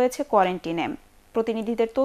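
A woman reading the news in Bengali, with a short pause about a second in.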